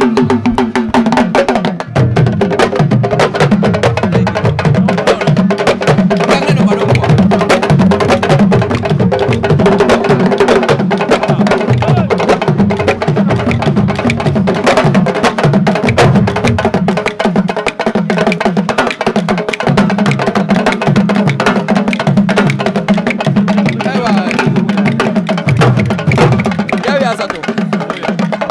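Senegalese sabar drum ensemble playing fast, dense interlocking rhythms, the drums struck with sticks and bare hands, with voices mixed in.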